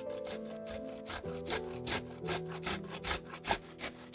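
Broccoli florets rasped against a fine stainless-steel cone grater in quick, even strokes, about four a second.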